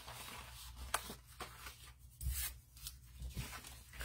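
Cardstock sheets and paper pieces being handled, slid and set down on a wooden table: soft rustling with a few light taps, the sharpest about a second in.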